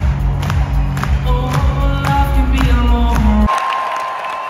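Loud live pop music with singing over a heavy bass, heard from the audience through an arena sound system. About three and a half seconds in, the music cuts off abruptly, leaving a crowd cheering.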